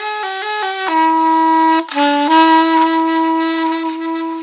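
Solo soprano saxophone playing a melody: a quick run of short notes stepping up and down, then a long held note, a brief dip to a lower note about two seconds in, and back to the long held note.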